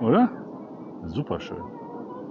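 A person's voice: a drawn-out syllable that glides down and back up at the very start, then a short utterance a little past a second in, over a steady outdoor background rush.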